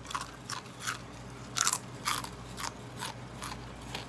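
Chewing a mouthful of Xtra Flamin' Hot Stax potato crisps: a run of irregular crunches, about three a second.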